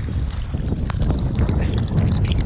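Storm wind rumbling on the microphone of a camera held at the sea surface, with choppy waves slapping and splashing against it, the splashes coming more often from about a second in.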